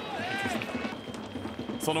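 Narration of a TV sports highlight, with its voice tailing off at the start and resuming near the end, over faint background music.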